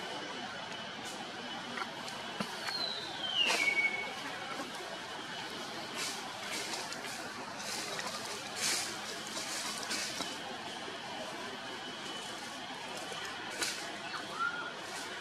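Outdoor background noise with scattered soft clicks, and one high animal call about three seconds in that slides down in pitch and levels off briefly.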